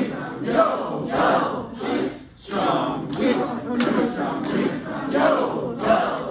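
A roomful of people chanting rhythm syllables such as "yo", "butt cheeks", "quack" and "beep" aloud together, groups overlapping one another in canon. The chant comes in short loud pulses, with a brief dip a little over two seconds in.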